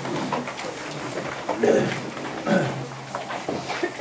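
Paper pages of a book being turned and handled close to the microphones, with light rustling and clicks, and a few short, low murmurs of a man's voice.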